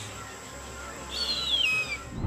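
Harpy eagle giving one high, thin whistled scream that falls in pitch, about a second in, over a low steady rumble.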